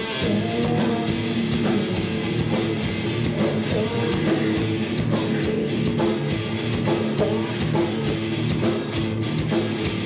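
Rock band playing live: electric guitars, bass guitar and drum kit.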